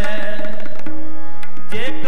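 Sikh kirtan: two harmoniums holding steady chords under a sung shabad, with tabla strokes prominent. The voice breaks off briefly near the middle and comes back just before the end.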